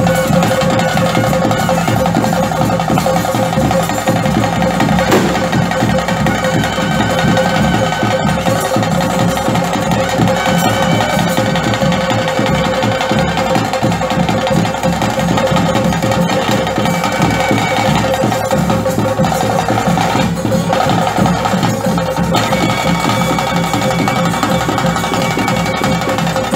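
Bhuta kola ritual music: fast, dense drumming with a steady held tone over it.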